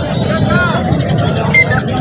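Steady din of a busy outdoor market: background voices over constant noise, with a short high chirp near the end.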